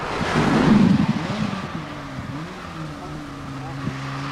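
A car going by at speed: a rush of engine and road noise swells in the first second, then the engine settles into a steady drone whose pitch wavers slightly.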